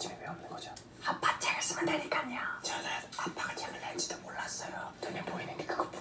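Young men whispering to each other in Korean, quiet and broken by short pauses.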